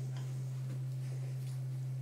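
Steady low hum with faint, scattered small clicks and taps of two people eating with their hands from plates and tearing bread.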